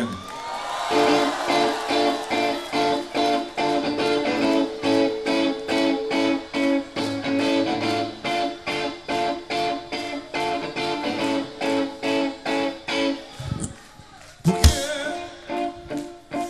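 Live rock band playing an instrumental intro: electric guitar chords over a steady beat. Near the end the band drops out briefly, then comes back in on a single loud hit.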